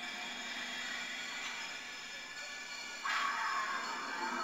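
Film soundtrack music played through classroom wall speakers: a sustained sound of many held tones that starts suddenly and swells louder about three seconds in.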